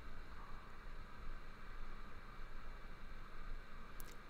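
Faint, steady hiss of a hot air rework gun blowing onto a circuit board, heating a surface-mount diode's solder joints to free it.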